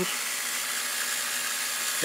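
A 12-volt micro electric fuel pump running with a steady, even hum, circulating fuel from a boat's fuel tank through a filter and water/fuel separator and back into the tank to flush out sludge.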